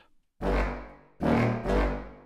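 Sampled orchestral library playing very low, short staccato chords, three in quick succession after a brief pause, each trailing off: the contrabass clarinet and contrabassoon transposed down an octave, loaded with contrabass trombone and contrabass tuba.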